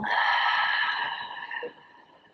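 A woman's long, slow exhale, the breath heard as a soft hiss that fades away by near the end.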